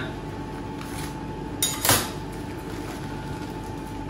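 Two quick metallic knocks close together about two seconds in, kitchen tongs or a similar metal utensil clattering against the steel counter or plate, over the steady hum of kitchen ventilation.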